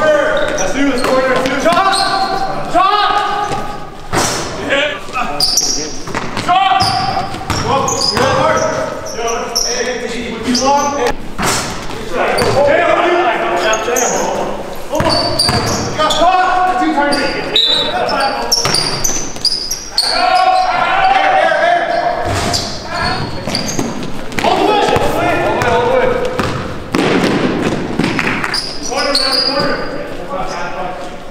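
Basketball game in a gymnasium: a ball bouncing on the hardwood court among players' voices calling out, with the hall's echo.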